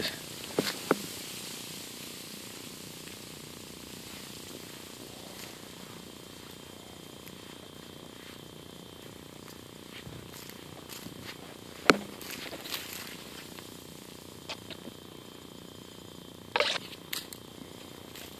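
Dry beach grass and debris rustling steadily as a crowd of fiddler crabs scurries through it, with scattered sharp clicks and crackles, the loudest about twelve seconds in and a short cluster near the end.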